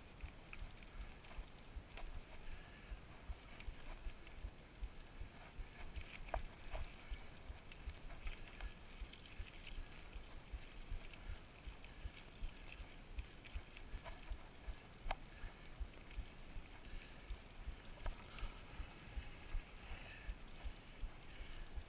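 Mountain bike rolling over a gravel dirt road, picked up through a camera mounted on the handlebar: a fairly quiet, uneven run of low bumps and knocks from the tyres and frame, with a few sharp clicks along the way.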